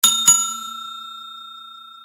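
Bell-ring sound effect for a notification-bell icon: two quick strikes, then a clear ringing tone that fades away slowly.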